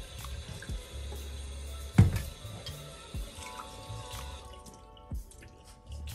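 Kitchen tap running into a glass jar in a stainless steel sink as the jar is rinsed, with a sharp knock about two seconds in and smaller clinks of glass on steel. The water stops a little past halfway, and background music comes in over the second half.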